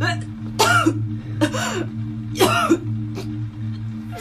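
Three short, choked cries from a distressed woman, each rising and falling in pitch, over a low, steady musical drone.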